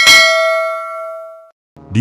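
Notification-bell sound effect: a single bright ding that rings and fades for about a second and a half, then cuts off.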